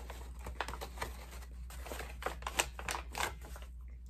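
A person chewing a bite of a soft fried chicken sandwich close to the microphone: many small irregular mouth clicks and wet crackles.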